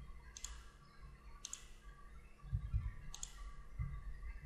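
Computer mouse and keyboard clicks: three sharp clicks spread across the few seconds, with a low rumble a little past the middle.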